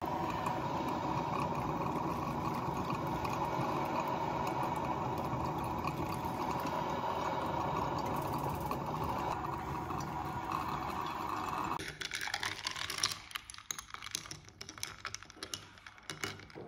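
Technivorm Moccamaster drip coffee maker brewing, a steady bubbling gurgle as its heater pushes water up the tube onto the grounds. It cuts off about twelve seconds in, and is followed by a few seconds of quick light clinking as a glass straw is stirred in a glass jar.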